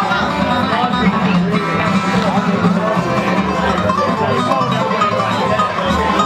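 Live acoustic bluegrass band playing a tune: two steel-string acoustic guitars picking, with banjo and upright bass underneath, a steady run of quick plucked notes.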